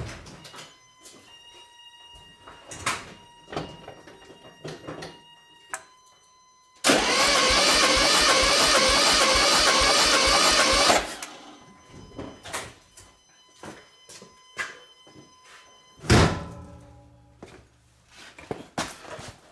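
1974 VW Super Beetle's air-cooled flat-four being cranked over on the starter for about four seconds, spark plugs out, spinning freely with an even beat, during a compression test of cylinder one, which reads only 30 PSI. A loud thump follows a few seconds later.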